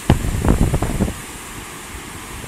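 Wind buffeting the microphone in gusts for about a second. A steady rush of water pouring over a concrete spillway weir carries on underneath and is left alone after that.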